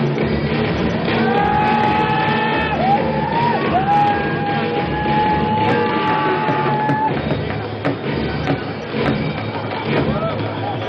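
A soldier's long, drawn-out shouted command held on one note for several seconds, with one short break and a rise in pitch partway through, over crowd noise and loudspeaker music.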